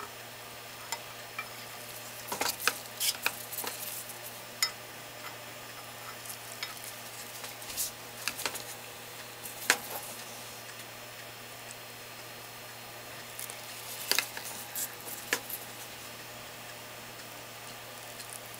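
Scattered soft clicks and wet squelches from a gloved hand working wet wool roving in a pot of hot dye water, coming in a few short clusters over a steady low hum.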